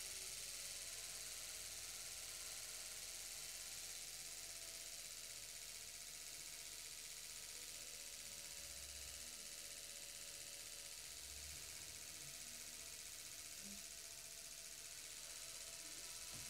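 Salvaged washing machine universal motor running on battery power, belt-driving a small DC motor used as a generator: a faint, steady running hum.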